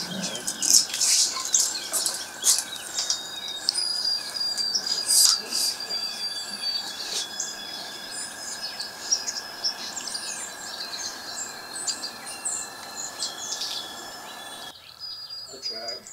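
Songbirds chirping and calling many times in quick succession, over a steady high-pitched tone. The background drops off abruptly near the end.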